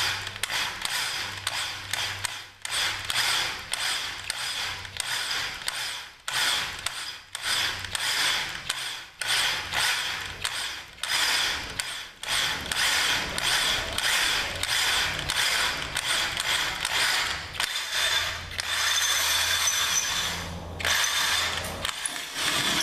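Electric drill slowly boring through steel bed rail angle iron at low speed to keep the metal cool. The rough cutting noise is broken by frequent short pauses. About three-quarters of the way through it settles into a steadier whine with a low hum.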